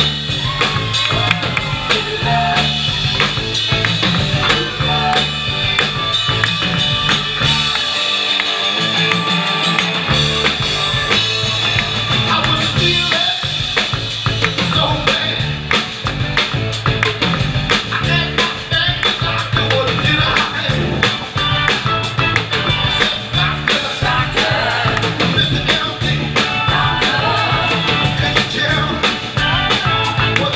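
Live band playing a number just after a count-in: Hammond B-3-style organ over a drum kit keeping a steady beat. The low end drops out for about two seconds around eight seconds in, then the full band comes back.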